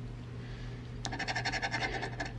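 A blue plastic scratcher scraping the coating off a scratch-off lottery ticket, starting about a second in as rapid, even back-and-forth strokes, about ten a second.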